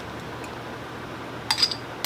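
A metal spoon clicking against a jar, twice in quick succession about a second and a half in, with a brief ringing note, over a steady low room hum.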